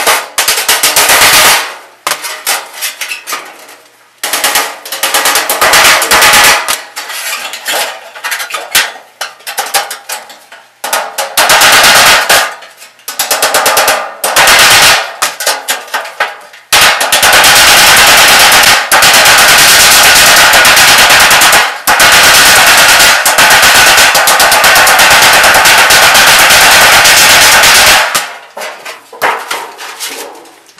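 Loud, rapid hammer blows on sheet-metal ductwork, beating a seam flange down to join the elbow's pieces. They come in short runs at first, then as a long, nearly unbroken string of strikes in the second half.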